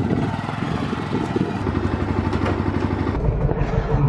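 Yamaha sport motorcycle's engine running with an even, rapid pulse as the bike rides off; about three seconds in the sound turns duller and more muffled.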